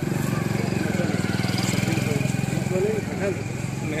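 A motorcycle engine running close by with a steady, fast-pulsing beat that eases off near the end, under scattered crowd voices.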